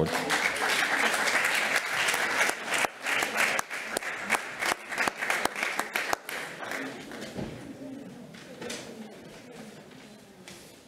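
Audience applauding in a hall, a dense patter of clapping that thins out and fades away over the last few seconds.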